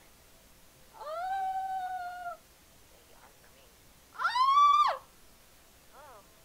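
A woman's high-pitched excited squeals, twice: the first held at an even pitch for about a second, the second a few seconds later higher and louder, rising then falling.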